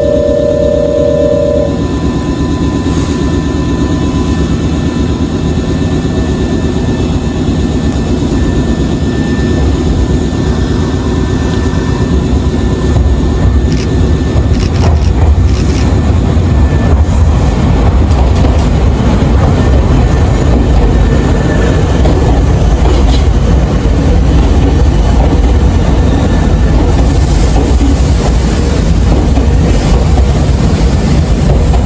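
Nankai 6200-series electric train running in alongside the platform: a steady rumble of wheels and running gear that grows louder from about ten seconds in as it draws near, with a few sharp clicks in the middle.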